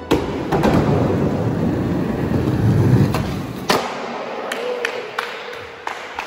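Skateboard wheels rolling with a loud rumble, broken by sharp clacks of the board, the loudest a little before four seconds in. After that comes quieter rolling with a few lighter clicks.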